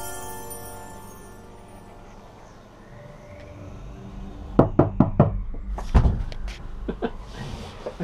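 Background music fading out over the first two seconds. A run of sharp knocks and thumps follows about halfway through: four quick ones, a heavier one about six seconds in, and a couple of lighter ones near the end.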